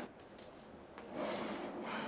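A short, audible breath out through the nose or mouth, like a sigh, about a second in and lasting about half a second, after a moment of quiet room tone.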